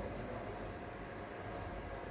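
Steady background noise of a large hall: an even low hum and hiss with no distinct events.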